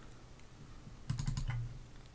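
Computer keyboard keys clicking in a short quick run about a second in.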